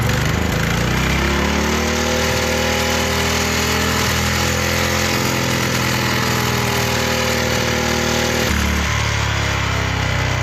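Small stationary engine running with no oil, no cooling and no governor: it revs up sharply, holds a high speed, then drops back to a lower speed late on.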